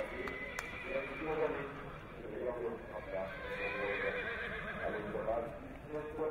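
A horse whinnying, with people talking in the background.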